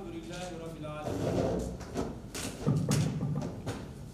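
A few murmured words of a man's voice, then clothing rustling and muffled thumps as a man gets up and moves about at a table with microphones; the loudest thump comes just before three seconds in.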